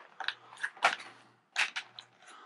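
Modular motorcycle helmet being pulled down onto the head: a handful of short scuffs and rustles as its padding and shell rub against the head and hands.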